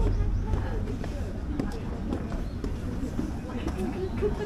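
The deep boom of a large shrine taiko drum, struck just before, dies away over the first second. Background chatter of many people talking runs under it.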